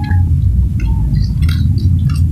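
Heavy, steady low rumble with scattered light clicks and clinks over it.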